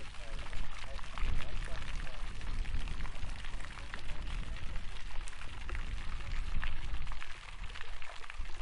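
Garden fountain jets splashing down in a steady patter of falling water. Wind rumbles on the microphone.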